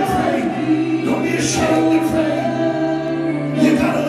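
Live gospel worship singing, the voices amplified through microphones, over a steady keyboard accompaniment with long held notes.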